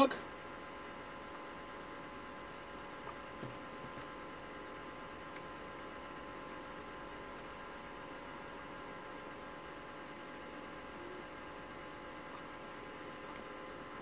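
Steady electrical mains hum with a set of faint steady tones, the room tone of a bench of running electronic equipment. A couple of faint ticks come about three seconds in.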